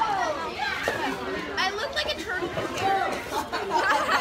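Speech only: teenagers talking and chattering.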